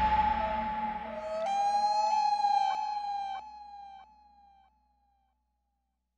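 Closing tones of a film trailer's soundtrack: one steady siren-like note with a lower note shifting beneath it and a couple of clicks, fading out about four seconds in, then silence.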